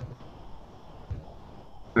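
Quiet room noise with a few faint taps from laptop keys being typed.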